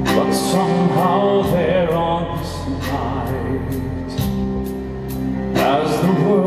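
A male singer's live lead vocal in a rock-orchestra ballad, over held instrumental accompaniment. He sings one phrase at the start, then the instruments carry on alone until he comes in again near the end.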